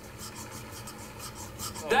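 Soft rapid rubbing or scratching strokes, several a second, with a voice starting just at the end.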